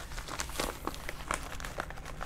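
A yellow paper mailing envelope crinkling and rustling as it is handled, with irregular small crackles.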